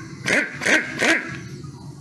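A dog barking three times in quick succession, about 0.4 s apart.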